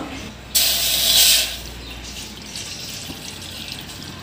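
Water poured into a stainless steel pot, splashing loudly from about half a second in and then settling to a quieter, steady pour.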